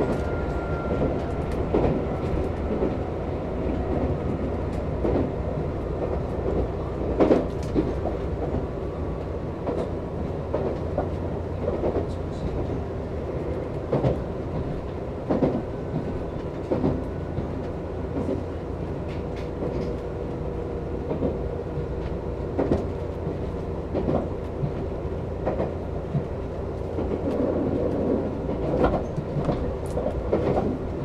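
Nankai 30000 series electric train running, heard from inside the front of the train: a steady rumble of wheels on rail with irregular clacks as the wheels cross rail joints.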